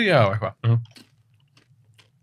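A man's voice trailing off in the first half-second, then one short vocal sound, followed by a pause with only a low steady hum and a few faint clicks.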